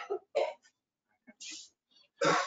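Tail of a person's short laugh heard over a video-call line: two brief voiced bursts at the start, then a soft breathy puff about one and a half seconds in.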